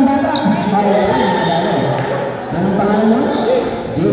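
Voices of people talking nearby during a basketball game, with a basketball bouncing on a hardwood gym floor.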